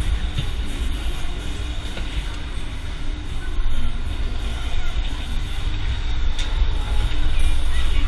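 Wind buffeting a camera mounted on a swinging pendulum thrill ride, heard as a heavy, steady rumble, with fairground music underneath.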